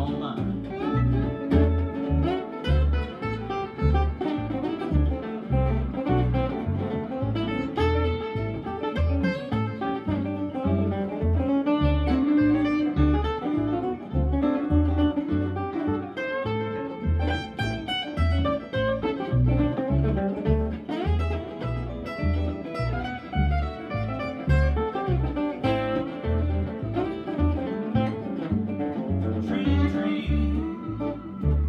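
Small acoustic band playing a blues number with no vocals: guitars pick melodic lines over a steady upright bass beat.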